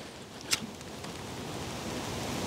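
A handheld lighter clicks once about half a second in as it is struck to light birch bark, followed by a soft hiss that slowly grows louder as the flame takes.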